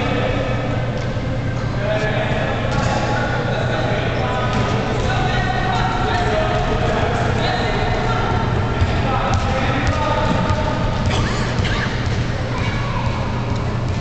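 A basketball bouncing on a hardwood gym floor as a child dribbles it, amid indistinct overlapping voices in a large hall, over a steady low hum.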